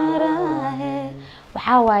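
A man singing a slow, wordless melody on drawn-out "eh" vowels, with a low steady hum beneath. The singing fades just past a second in, and a new voice with a sliding "eh" comes in near the end.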